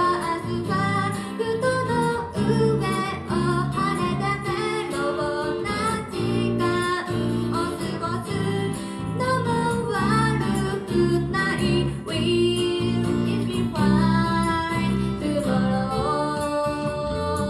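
A song played live by a small band: a woman sings the melody over guitar accompaniment, with acoustic guitar among the instruments.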